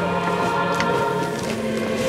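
A choir singing a slow devotional hymn, several voices holding long notes together.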